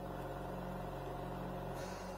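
Steady hum of the oxygen concentrator running to feed a lit lampworking bench torch, an even drone with several steady pitched lines.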